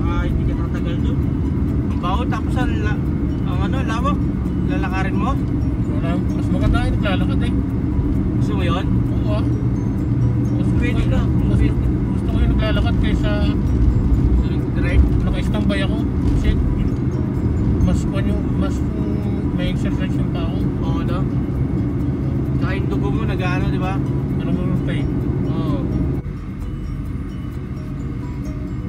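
Steady road and engine noise inside a moving car's cabin, with a voice going on over it. Near the end the voice stops and the rumble drops a little.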